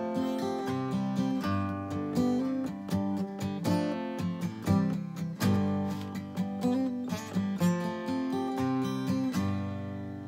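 1982 Takamine dreadnought acoustic guitar, a copy of a Martin D-28, playing picked and strummed chords as an instrumental outro. It ends on a last chord left to ring near the end.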